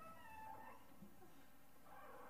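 Near silence: room tone, with a faint, brief high-pitched wavering sound in the first second.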